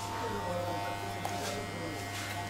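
Electric hair clippers buzzing steadily while cutting hair, a low even hum.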